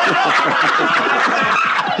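Group laughter from many people at once, a dense, steady wave of laughing that fills the whole moment, in response to a punchline.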